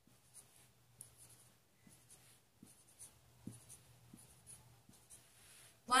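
Felt-tip marker writing on a white board: a string of faint, short scratching strokes of the tip, with a faint low hum underneath.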